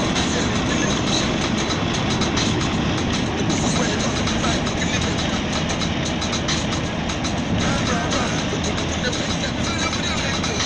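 Steady road and wind noise from a car driving at speed on a highway, heard from inside the car.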